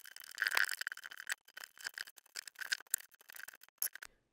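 Faint rustling and many small clicks as the paper pages of a Lego instruction booklet are handled and turned.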